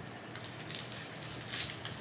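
Faint crinkling and rustling of a small package being opened by hand, with scattered soft ticks of handling.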